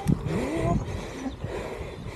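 A man's voice making a short drawn-out sound that rises in pitch about half a second in, over a steady rushing noise of wind and mountain-bike tyres rolling on dirt.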